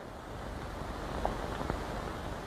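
Steady hiss and low rumble of an old film soundtrack, with a few faint ticks.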